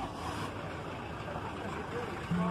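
Street ambience in a busy town square: a steady hum of traffic with faint voices of people talking in the background.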